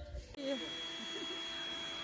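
Electric air pump inflating an air mattress, running with a steady hum and a thin high whine; it comes in after a cut about a third of a second in.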